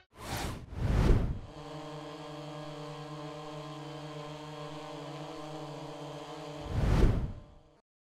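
Logo sound effect: two quick whooshes, then a steady propeller hum of a multi-rotor drone holding for about five seconds, closed by a louder whoosh about seven seconds in.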